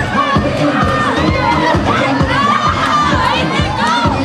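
A large crowd of students shouting and cheering, many voices whooping at once, over music with a steady beat.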